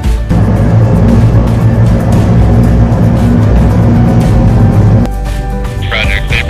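Rotors of a SureFly eVTOL octocopter running as it hovers just off the ground: a steady whirring drone with a low hum. It comes in about a third of a second in and cuts off about five seconds in, with music behind it.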